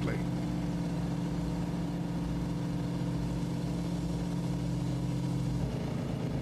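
Construction machinery engine running steadily at an even pitch, with a slight change in its tone near the end.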